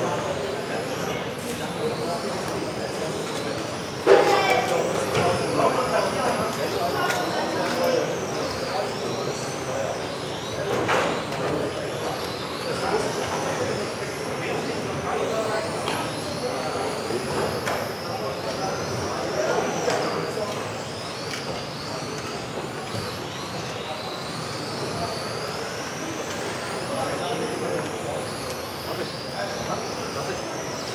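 Several electric RC touring cars racing, their motors whining up and down in pitch as they accelerate and brake. A sharp knock about four seconds in.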